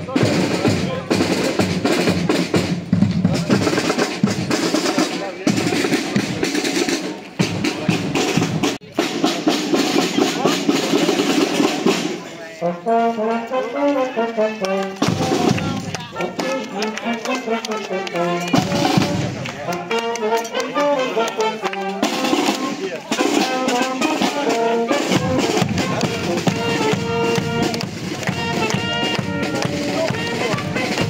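Street band of brass and drums playing a march: for the first twelve seconds mostly drums, then a brass melody comes in clearly around twelve seconds and carries on with the drums.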